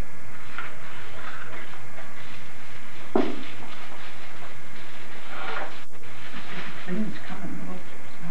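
Tissue paper and gift wrap rustling in short, scattered bursts as a small gift box is unwrapped by hand, over a steady low hum and faint background voices.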